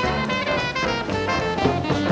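Swing jazz band playing an instrumental passage: horns over a plucked double bass and drum kit, at a steady, driving swing tempo.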